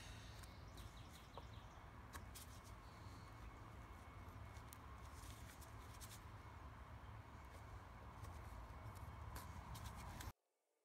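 Near silence: a low, steady background rumble with a few faint clicks.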